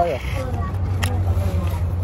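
Cardboard pizza box being handled: a short rustle at the start and one sharp click about a second in, over a steady low hum.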